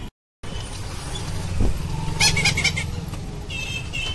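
Steady road rumble from inside a moving e-rickshaw, broken by a brief total dropout just after the start. A few short high-pitched sounds come about two seconds in and again near the end.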